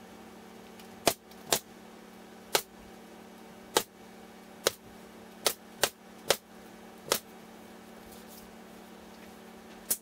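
Porter-Cable pneumatic brad nailer firing nails through pine edge strips into a plywood panel: about nine sharp shots at uneven intervals over the first seven seconds. A steady low hum runs underneath.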